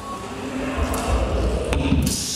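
Experimental music on invented acoustic instruments with live electronics: a dense, noisy texture with a deep rumble underneath and an airy hiss building in the upper range from about a second in, and a sharp click near the end.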